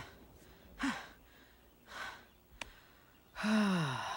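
A person's breathy gasps and sighs: a short gasp about a second in, a breathy exhale a second later, a small click, then a longer sigh that falls in pitch near the end.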